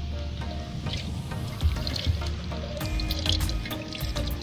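Water pouring from a bucket into a tin can punched with small holes, used as a makeshift watering can for a seedbed. Background music plays over it.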